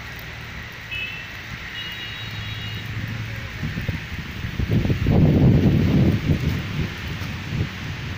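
Wind blowing across the microphone outdoors, a steady low rumble that swells into a stronger gust about halfway through, with a few faint high chirps early on.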